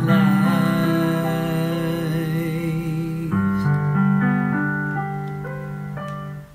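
Piano chords with a voice holding a long sung note with vibrato over them; about three seconds in the singing ends and the piano plays on alone with new chords, slowly getting quieter.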